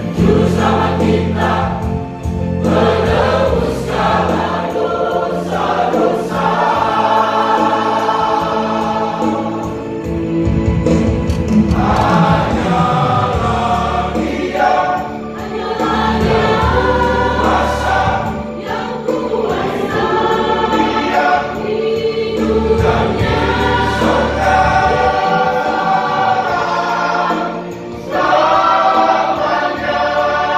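Church choir singing in harmony, with a sustained low accompaniment under the voices, in long phrases with brief breaks between them.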